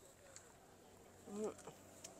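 Insects in a grape vineyard: a faint, steady high drone, with a brief low buzz that bends in pitch a little over a second in, as of a bee or fly passing close.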